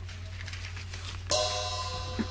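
Opening of a rock band's studio recording: a steady low hum, then about a second and a half in a sustained ringing chord with a bright cymbal-like wash comes in, just ahead of the full band.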